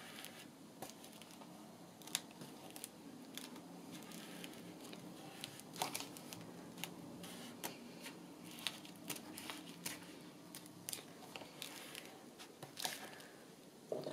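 Hands pressing and smoothing a paper pocket onto a journal page: faint, scattered paper rustles and light taps over a faint low hum.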